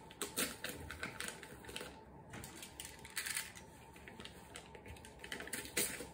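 A paper-wrapped parcel being handled and cut open: irregular crinkles, taps and clicks of the wrapping under the hands, with a utility knife slicing through the paper near the end.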